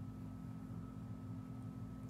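Quiet room tone: a steady low hum with a faint steady high tone, and no distinct sound events.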